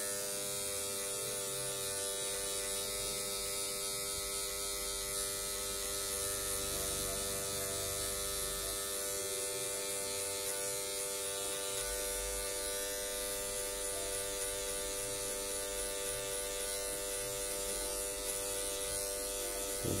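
Electric hair clipper with a plastic guard comb attached, running with a steady, unbroken buzz as it is worked through the hair to blend a fade.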